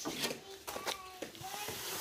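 Push broom scraping and tapping on a concrete barn floor in a few short strokes, with faint voices in the background.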